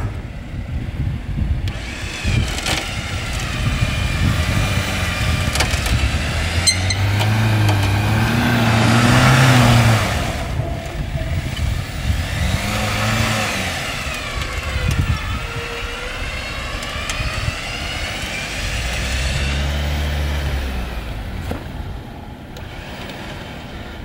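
A Jeep Wrangler being winched out of a mud hole: its electric front winch whines steadily, the pitch wandering with the load. Under it the engine revs up three times as the wheels churn forward.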